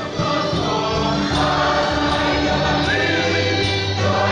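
A church congregation and choir singing a gospel hymn together, many voices over steady low accompanying notes.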